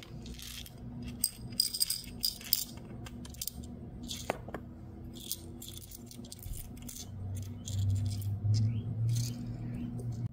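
Small pointed-back rhinestones clicking and rattling against hard plastic as they are tipped from a plastic sorting tray into a small clear plastic jar and nudged around inside it, in quick clusters of clicks. A low hum runs underneath, louder in the last few seconds.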